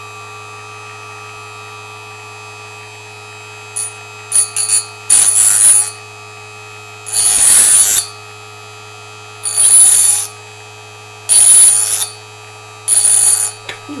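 Powermat multi-function electric sharpener running with a steady motor hum. A small screwdriver's metal tip is pressed against its grinding wheel in five loud grinding passes, about one every one and a half to two seconds, after a few brief light touches.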